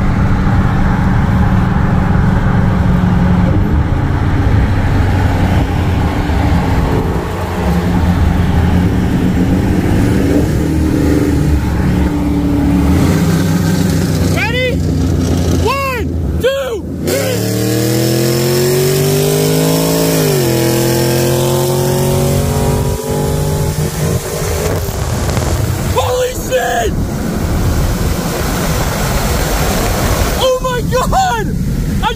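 Supercharged 6.2-litre Hemi V8 of a 2022 Dodge Challenger SRT Hellcat pulling hard in a race, heard from inside its cabin. The engine note climbs steadily through a gear, drops sharply at an upshift about twenty seconds in, then runs on steadily.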